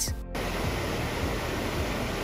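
Water rushing over a low weir into churning white water: a steady rushing noise that cuts in abruptly near the start, with background music underneath.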